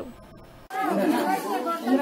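Several people's voices talking over one another, starting after a short lull.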